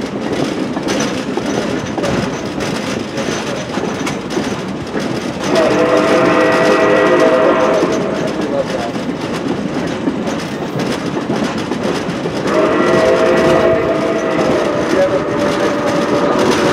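Passenger train rolling along, with wheels clicking over the rail joints. The locomotive sounds two long chord blasts, the first about five seconds in and the second, longer one near the end.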